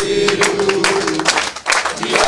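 A group of men chanting together in a held, sung line while clapping along in rhythm, typical of a union chant.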